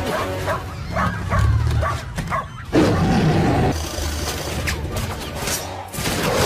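Action-film soundtrack: dramatic score music mixed with a dog-like animal call, over heavy low rumble. A sudden loud hit comes a little under three seconds in.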